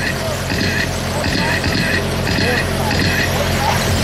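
Small electric radio-controlled sprint cars lapping a short oval, their motors giving a high whine that comes and goes about twice a second as they throttle through the corners, over a low steady hum.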